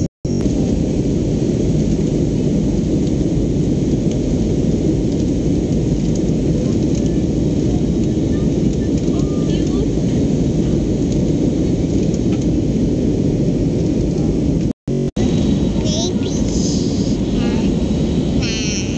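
Steady, loud jet airliner cabin noise in flight: the rumble of the engines and airflow. It cuts out sharply for a moment twice, once right at the start and once about 15 seconds in.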